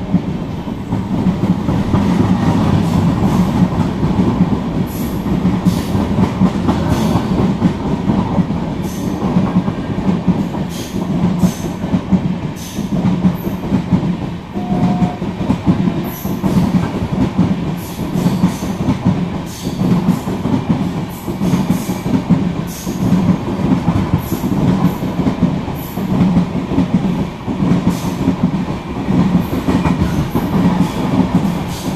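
Passenger train coaches rolling past at close range: a continuous loud rumble with a repeated clickety-clack of wheels over the rail joints.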